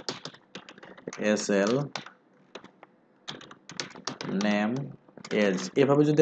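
Typing on a computer keyboard: quick runs of key clicks in the first second and again a little past three seconds in.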